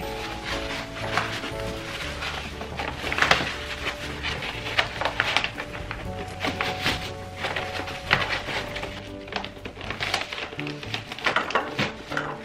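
Background music with held chords, over repeated crackling and rustling of self-adhesive vinyl contact paper being peeled back off a cabinet top and rolled up.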